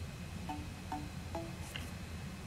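Soft background music: three quiet plucked or chime-like notes about half a second apart, then a faint higher note near the end, over a low steady hum.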